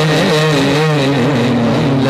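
A man singing a naat without accompaniment, amplified through a microphone. He draws out one long ornamented phrase, the pitch wavering and then settling on a held low note about halfway through.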